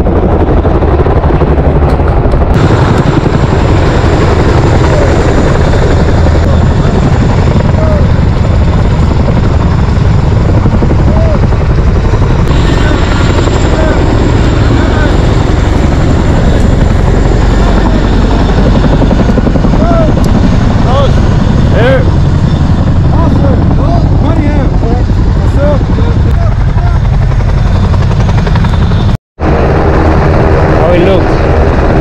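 Black Hawk helicopter's rotors and turbine engines, very loud and steady, as it comes in close to land.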